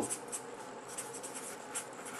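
Handwriting: quick, short scratching strokes of a pen, several a second, during a pause in the lecture.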